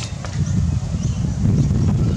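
Wind buffeting the microphone: a steady low rumble.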